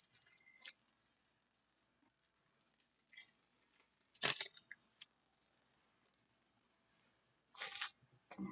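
A few brief crinkles and rustles of a foil trading-card pack wrapper and cards being handled, the loudest about four seconds in, with quiet gaps between.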